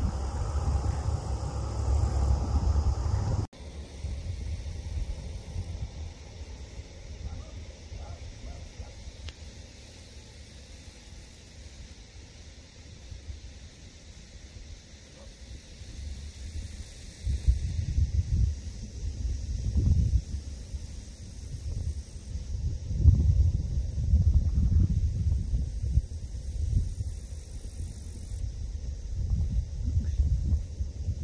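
Distant drone of a Canadair CL-415 water bomber's twin turboprop engines, fuller for the first few seconds and then cut off abruptly. After that a low rumble of wind on the microphone comes and goes in gusts, growing stronger in the second half.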